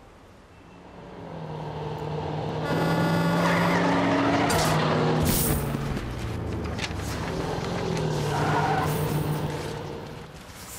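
An armored truck passes close by. Its engine sound swells over the first few seconds, stays loud, then fades near the end. Around the middle come a few sharp knocks as heavy money sacks drop onto the concrete sidewalk.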